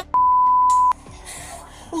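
Censor bleep: one steady beep, just under a second long, blanking out a swear word.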